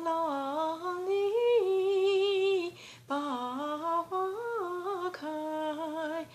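A woman's voice carrying a Chinese folk-song melody alone, without accompaniment: held notes stepping up and down, with a short breath about three seconds in.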